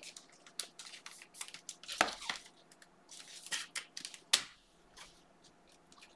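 Glossy Mosaic football trading cards being slid and flicked through by hand, a run of light clicks and swishes of card against card. There are sharper snaps about two seconds in and again at about four and a half seconds.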